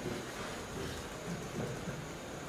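Quiet pause in a lecture room: room tone with a few faint, brief voice sounds in the second half, the tail of the audience's laughter.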